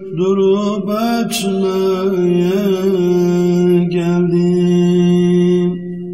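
Unaccompanied voices in a wordless interlude of a Turkish ilahi: a steady hummed drone under a wavering, ornamented vocal line. It begins to fade out at the very end.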